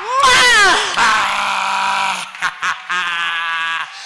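A woman wailing into a close-held microphone: a wavering, falling scream, then two long, steady cries.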